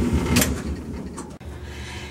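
Clothes dryer running, its drum tumbling a load of fabric with a low, uneven rumble; the sound breaks off about one and a half seconds in, leaving a quieter steady hum.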